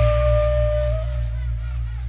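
Live band music dying away: a single held note ends about a second in, over a steady deep hum from the sound system.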